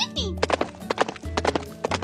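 A quick run of pony hoofsteps, clip-clopping in irregular pairs of knocks, over background music with a steady low bass line.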